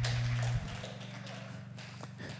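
Organ holding low sustained notes under a pause in the sermon. The notes drop quieter about half a second in and then hang on faintly.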